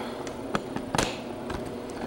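A few sharp clicks and knocks, the clearest about half a second and a second in, over a steady low background noise: handling noise from the recording phone being picked up and moved.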